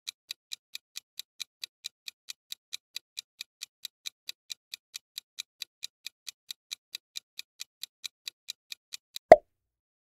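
Countdown timer sound effect: even clock-like ticking, about four or five ticks a second, ending near the end in a single louder pop as the answer is revealed.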